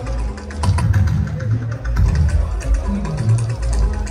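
Juju band music: a deep, moving bass line under quick percussion strokes, with no singing.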